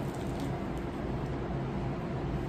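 Quiet chewing of a bite of corn gordita over a steady low hum.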